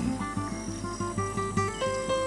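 Background music: short notes stepping in pitch over held tones.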